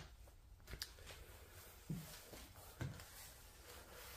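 Near silence in an empty room, with three faint soft footsteps about a second apart.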